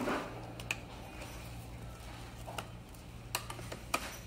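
A few light, scattered metal clicks from a wrench on the seat-clamp nut as it starts to be tightened, over a faint steady low hum.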